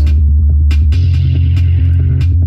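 Synthesized electronic track playing back from music software: a loud, steady synth bass line set to arpeggiate, with short drum-machine hits over it.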